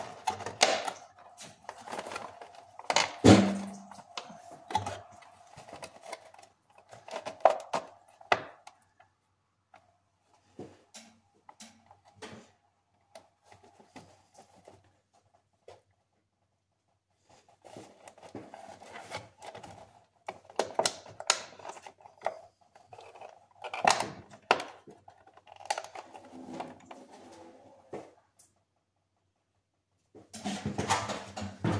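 Scattered clicks, taps and knocks of hands and tools handling parts in a car's engine bay, coming in bursts with a quieter stretch in the middle.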